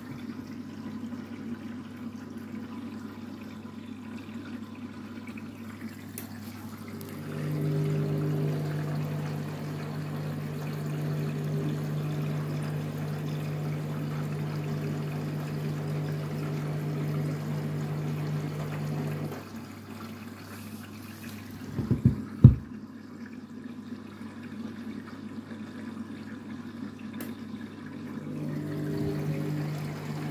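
Candy front-loading washing machine tumbling bedding during a rinse: water sloshing in the drum, and the drum motor running with a steady hum for about twelve seconds before it stops. In the pause a few sharp clicks sound, the loudest thing here, and the motor starts turning the drum again near the end.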